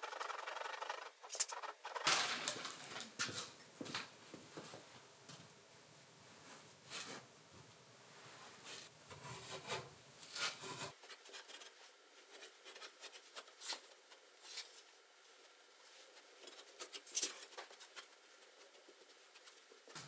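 Faint scratchy rustling and scraping as rock wool (mineral wool) batt insulation is sawn with a serrated knife and pressed into wall stud bays, with a few light clicks.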